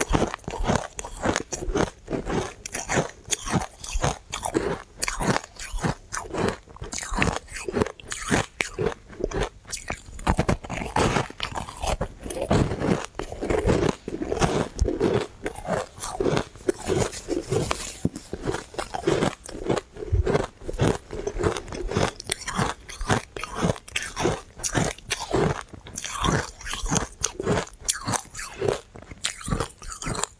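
Refrozen shaved ice coated in matcha powder being bitten and chewed, a dense, continuous run of crisp crunches.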